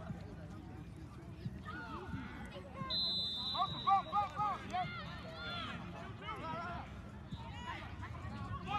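Distant shouts and calls from players and people along the sideline of an outdoor football field, with a short high steady tone about three seconds in.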